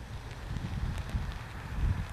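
Wind buffeting an outdoor microphone: a low, gusty rumble that is strongest near the end.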